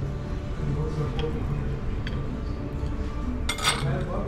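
Table knife cutting a small pastry on a ceramic plate: light clinks and scrapes of metal cutlery against the plate.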